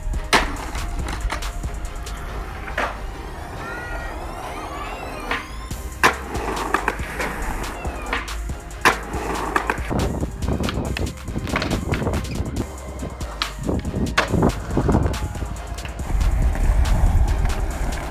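Skateboards on stone and concrete: hard wheels rolling, broken by several sharp clacks of tail pops and landings. Near the end a louder, steady rumble as several boards roll together.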